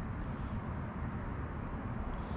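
Steady low outdoor background rumble, with no distinct events.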